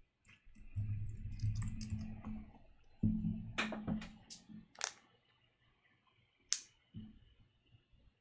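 Typing on a computer keyboard: a quick run of key presses in the first half, then a few separate sharp key clicks, the last one about six and a half seconds in.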